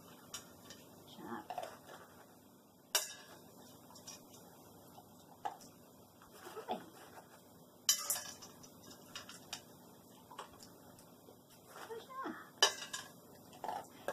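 Single pieces of dry dog food dropped one at a time into a stainless-steel dog bowl, each landing with a sharp ting: three drops about five seconds apart. Between them, quieter clinks and rattles from the bowl as the dog noses out each piece.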